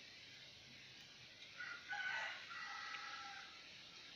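A rooster crowing once, a single call of nearly two seconds starting just before halfway through.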